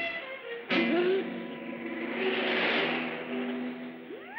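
Orchestral cartoon underscore. A sudden loud chord comes in just under a second in, then held notes run under a swelling, hissing wash of sound in the middle.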